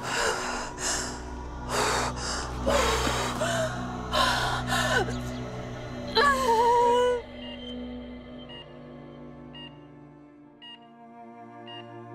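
A woman gasping and crying out in pain: several heavy, ragged breaths, then a wavering wail about six seconds in. Sustained dramatic background music runs under it and carries on alone, more quietly, in the second half.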